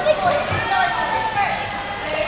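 Children's voices and calls ringing around an indoor pool hall, over steady splashing from swimmers kicking.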